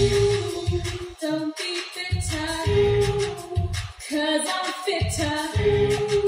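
A woman's voice singing a pop show tune over a karaoke backing track with a pulsing bass beat, played through PA speakers.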